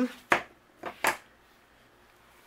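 Three short knocks on a craft tabletop as hands set things down, the first the loudest and the last two close together.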